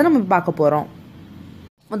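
A woman speaking in Tamil for about the first second, then a short pause of faint room tone that drops out to dead silence for a moment just before her voice returns.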